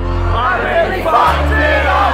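Live band music over a large outdoor PA, with a steady bass, and a crowd cheering and singing.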